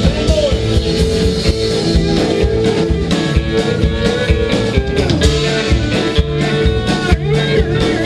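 Live alt-country band playing an instrumental passage with no vocals: electric guitar, pedal steel guitar, upright bass and drums over a steady beat.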